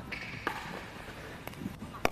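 Pickleball being played: a paddle hitting the ball with a sharp knock about half a second in, then a few fainter knocks near the end.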